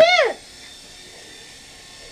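A child shouts "here", then a toy mini quadcopter's tiny electric motors give a faint, steady high buzz.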